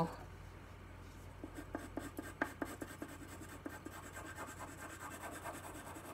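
Graphite pencil scratching across drawing paper in short, quick strokes, several a second, starting about a second and a half in, as diagonal and horizontal lines are drawn.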